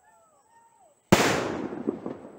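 A single loud bang about a second in, like a firecracker going off, echoing as it dies away over about a second. Before it, faint bird calls.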